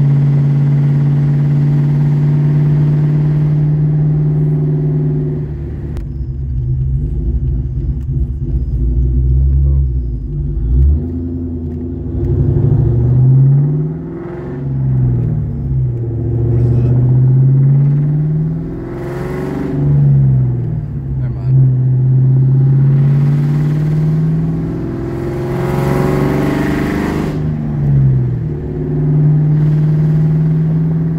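Engine of a 1998 Mustang GT, a 4.6-litre V8 fitted with a Comp Cams XE270AH camshaft and running without a tune, heard from inside the cabin on the move. It holds a steady cruising drone, then rises and falls in pitch several times from about ten seconds in as it accelerates and slows, with a rush of noise during the harder pulls near the end.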